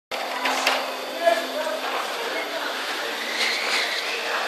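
Indistinct voices over a steady hum, with a couple of short clicks about half a second in.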